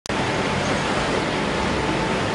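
Steady road traffic noise, an even rush with no single event standing out.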